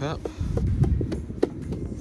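Low rumbling handling noise, with a few short sharp taps as a hand touches the wing mirror cover.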